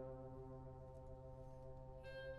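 Orchestral brass holding a soft, steady sustained chord, the lowest note dropping out near the end.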